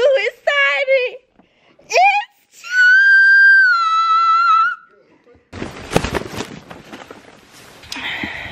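Excited shrill cries, then one long high-pitched scream held for about two seconds, dipping slightly in pitch at the end. It is followed by a few seconds of rustling and crackling.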